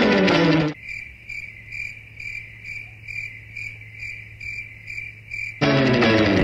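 The music cuts out and a cricket-chirping sound effect plays: even chirps about two and a half times a second, the stock comic cue for an awkward silence. Music returns near the end.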